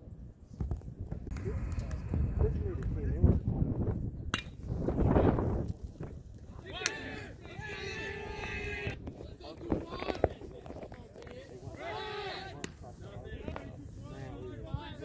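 Voices of players and spectators shouting and calling out across an outdoor baseball field, in several spells. A low rumble fills the first half, and sharp clicks fall about four and seven seconds in.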